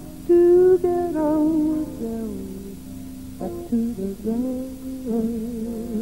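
A woman singing a slow melody with wavering, gliding pitch while playing a hollow-body electric guitar.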